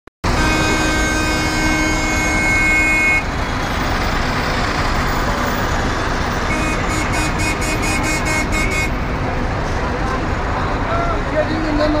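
Busy bus-station street traffic: buses and cars running, with voices in the crowd. A long steady horn blast, about three seconds, cuts off suddenly near the start. About halfway through, a second steady tone with a quick pulsing tick lasts about two seconds.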